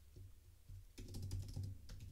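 Typing on a computer keyboard: a run of light key clicks, sparse at first and coming fast from about a second in.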